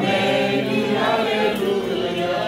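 A crowd of voices singing a hymn together in long, held notes.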